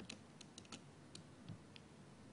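Near silence, broken by a few faint, irregular clicks.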